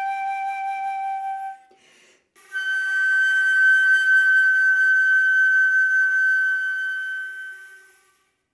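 Solo concert flute holding a long note, a short breath about 2 s in, then a long sustained final note that fades away to silence near the end.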